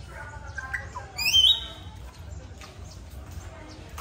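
A bird gives one loud, high squawk about a second in that rises in pitch and then holds briefly, over the chatter of people's voices.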